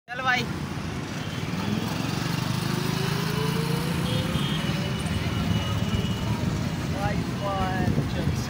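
A road vehicle's engine running while driving, with road noise. Its pitch rises slowly over a few seconds as it gathers speed.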